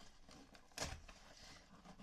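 Faint handling of a cardboard parcel being opened, with one short, louder scrape just under a second in.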